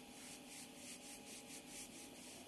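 Faint, rapid rubbing strokes, about six a second, over a low steady hum.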